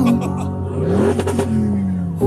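Car engine accelerating, heard from inside the cabin: its pitch rises about a second in, then falls away, under background music.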